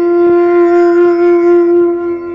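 A wind instrument holding one long, steady note in a Malayalam poem's instrumental music, beginning to fade at the very end.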